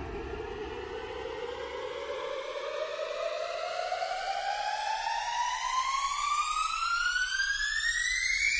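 Siren-like rising tone effect in a DJ remix: one tone with overtones glides slowly and steadily upward in pitch, growing slightly louder, with no beat under it.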